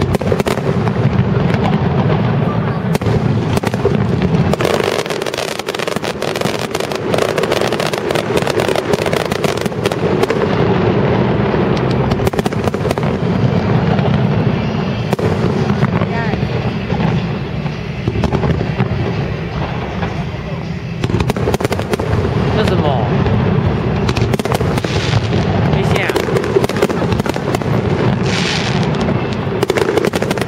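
Fireworks display: aerial shells bursting in a near-continuous barrage, with dense crackling and bangs.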